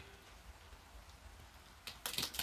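Near silence: faint room tone, with one soft click near the end as fingers work at the tie of a woven plastic sack.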